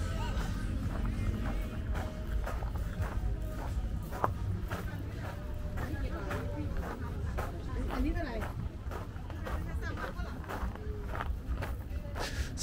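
Busy night-market ambience: music playing and people's voices around, over a steady low rumble, with scattered clicks and steps as the camera is carried along.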